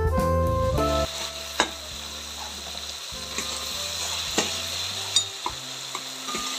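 Background music stops about a second in. Then chopped tomatoes, onions and curry leaves sizzle in oil in a steel kadhai, stirred with a slotted steel spatula that clinks against the pan a few times.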